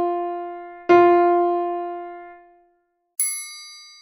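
Piano sounding the single starting note F above middle C: one strike already dying away, then a second strike about a second in that rings out and fades. Near the end comes a high, bell-like ding, the first beat of the click-track count-in at 50 bpm.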